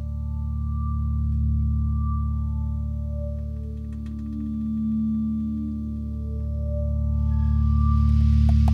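A live band's instrumental intro: a sustained low drone under slow, held tones that swell and fade in turn. Near the end a hiss rises over it.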